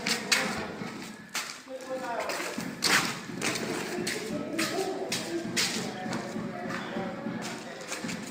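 People's voices talking, with several sharp knocks and thuds scattered through.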